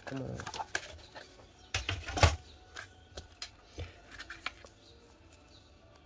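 Sheets of scrapbooking paper being handled and moved around on a work table: scattered rustles and light clicks, with a sharper knock about two seconds in.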